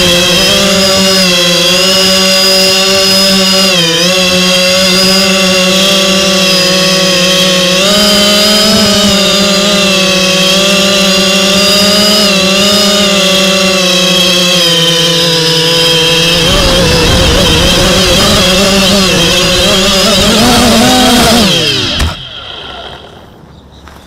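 Motors and propellers of an X250 mini quadcopter, heard loud and close from the camera on its frame, whining steadily in flight with the pitch wavering as the throttle changes. The pitch rises briefly, then the motors stop suddenly near the end.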